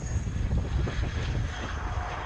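Bombardier Learjet 45's two Honeywell TFE731 turbofan engines on the landing roll: a steady rushing jet noise with a thin high turbine whine that sinks slightly in pitch.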